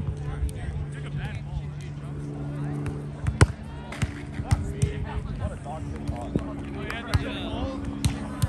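A volleyball being struck during a grass volleyball rally: a handful of sharp slaps, the loudest about three and a half seconds in.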